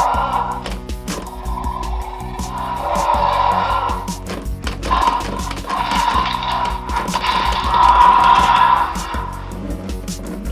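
Jurassic World Roarivores Triceratops toy playing a series of recorded dinosaur roars through its small built-in speaker, a roar that sounds like it belongs to a Tyrannosaurus rex. A few mechanical clicks come from the button-driven head-ram mechanism, and background music runs under it.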